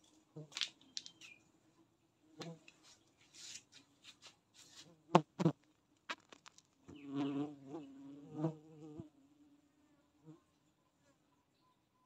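Itama stingless bees (Heterotrigona itama) buzzing around an opened log hive, with a louder buzz from a bee close by between about seven and nine seconds in. Scraping sounds and two sharp clicks near the middle come from hands working inside the wooden log.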